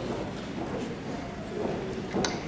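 Footsteps of shoes on a stage floor as a graduate walks across the stage, faint against the background of the hall.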